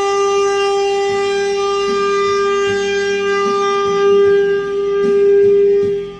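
Alto saxophone holding one long note for about six seconds, swelling louder twice before it stops, over a quieter recorded backing track. It is played by someone seven months into learning the instrument.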